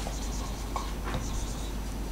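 Marker pen writing on a whiteboard: a run of short, high scratchy strokes as the letters are drawn.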